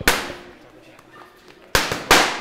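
Boxing gloves smacking into leather focus mitts: two sharp punches about 1.7 seconds apart, each echoing off the concrete corridor.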